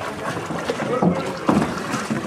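A gondola being rowed: water sloshing around the oar and hull, with sharp knocks about a second and a second and a half in, and faint voices.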